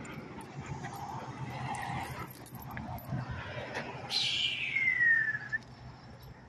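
Small dog whining once, a high whine that slides down in pitch over about a second and a half, a little past halfway through, over faint background noise.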